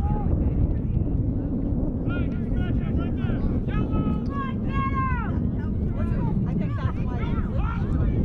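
Wind buffeting the camera microphone in a constant low rumble, with distant voices shouting across the field, several rising-and-falling calls starting about two seconds in.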